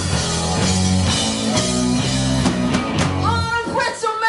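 Live rock band playing: drum kit, distorted electric guitar and bass with vocals. The band cuts off about three seconds in and a lone voice carries on.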